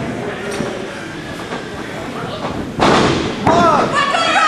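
A loud thud on the wrestling ring's canvas about three seconds in, ringing briefly in the hall, followed by shouts from the crowd.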